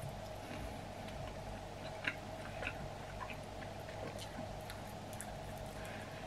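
Faint chewing of a cold sweet chilli chicken wing: scattered soft mouth clicks and smacks over a steady low room hum, the most distinct about two seconds in.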